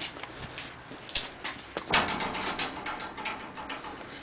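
A puppy scrabbling about: its claws tick and scrape as it paws up against a metal fence, with a couple of sharper knocks, the loudest about two seconds in.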